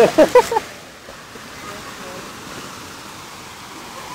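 Small waterfalls running steadily over rocks into a pond, an even rush of water.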